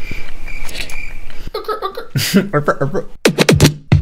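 A man vocally imitating a short sound effect, making mouth noises instead of words, to show the effect he wants for a change in the song.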